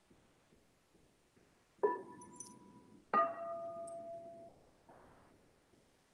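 Two singing bowls struck one after the other, about a second and a half apart, each ringing with a clear steady tone for a second or so before it is cut off. The second bowl is lower in pitch, and faint light clinks come between the strikes.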